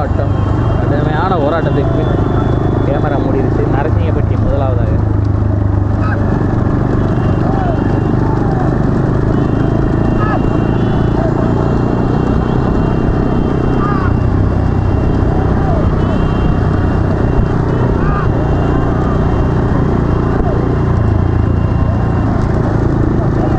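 A pack of motorcycle engines running steadily close behind a racing bullock cart, with men's shouts and calls over the engine noise, most of them in the first few seconds.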